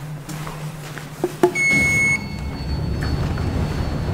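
ITK-modernised Magnusson hydraulic elevator arriving at the landing: two quick clicks, then a single electronic arrival beep of about half a second, and the automatic sliding doors opening with a steady low running noise.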